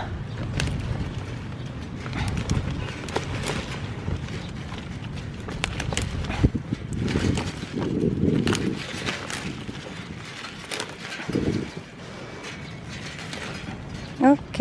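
Kale leaves being snapped and pulled off the plant by hand: many short crisp snaps, one after another, among rustling leaves.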